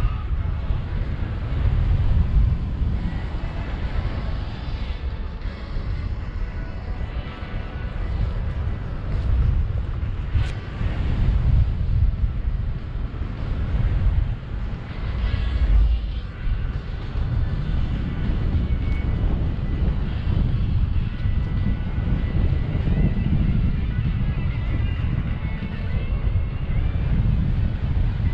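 Airflow buffeting a paraglider pilot's camera microphone in flight: a low, rushing wind rumble that swells and fades irregularly.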